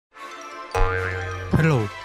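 Cartoon background music starts softly, then comes in fuller with a sudden chord. Just after a second and a half, a cartoon boing sound effect slides down in pitch.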